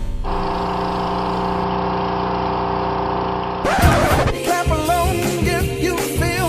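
Background music: a sustained, steady chord holds for about three and a half seconds. Then a new song cuts in with a beat and a singing voice.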